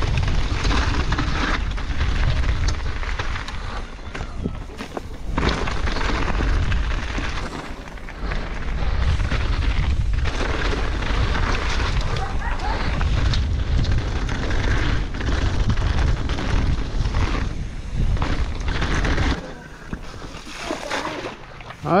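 Wind rumble on an action camera's microphone with tyre and trail noise from a mountain bike riding down a trail at speed; the noise drops away about nineteen seconds in.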